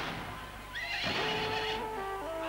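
Battle sound effects: a horse whinnying between two heavy blasts about a second apart, with held music notes coming in during the second half.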